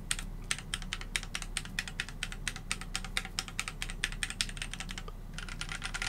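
Typing on a Keychron Q1 75% mechanical keyboard with an aluminium case and Gateron Phantom Brown tactile switches. It is a steady run of key clacks, several a second, with a short pause about five seconds in.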